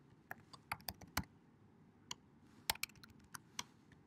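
Computer keyboard keys being pressed: a scatter of sharp clicks, one cluster in the first second or so and another from about two seconds in.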